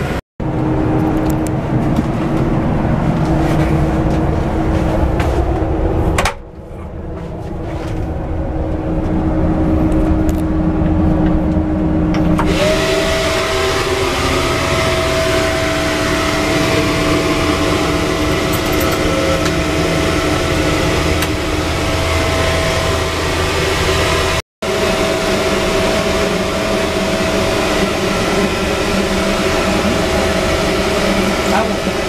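Cabin noise inside a moving Marcopolo Paradiso 1800 DD G8 double-decker coach on a Volvo B450R chassis: a steady engine and road drone with a constant hum that shifts to a higher pitch about twelve seconds in. The sound cuts out briefly twice.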